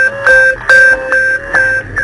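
Background music: a repeating figure of short pitched notes, about five in two seconds.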